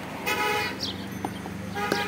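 A vehicle horn honks twice: a loud short toot about a quarter second in, and a weaker one near the end, over a steady low hum.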